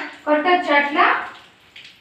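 Speech only: a young child talking for about a second, then a short pause.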